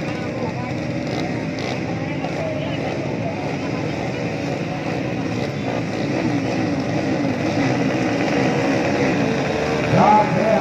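A row of children's mini motocross bikes running together at the start gate, engines blipping up and down in pitch. From about six seconds in the revving gets louder and busier as the riders wait for the gate to drop.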